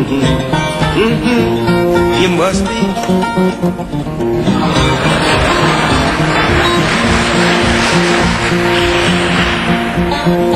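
Fingerpicked acoustic guitar playing a steady instrumental passage. About halfway through, audience applause comes in and carries on over the guitar.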